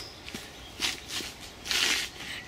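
Short scuffing and rustling noises of feet turning on a dirt path, a few brief scrapes with the longest and loudest near the end.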